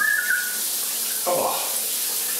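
Shower running, a steady hiss of spray on tiles, with a few whistled notes at the very start.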